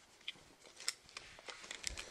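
Scattered faint clicks and ticks from a retractable tape measure being handled.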